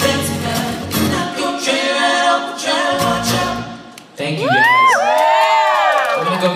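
Male voices singing in close harmony as a song ends. The low accompaniment drops out about a second in, and near the end one voice sings a note that rises and then falls away.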